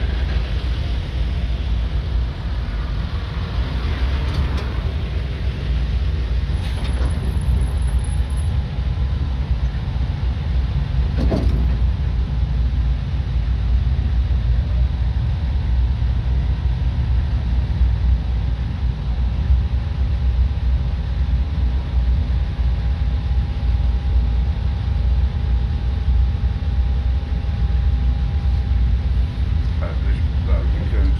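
Steady low engine rumble heard from inside a bus that rolls to a halt and idles. A faint steady whine sets in about seven seconds in, and there is one sharp click about eleven seconds in.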